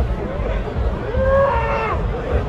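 A bull bellowing: one long call of about a second, rising slightly and then holding, starting near the middle, over crowd chatter.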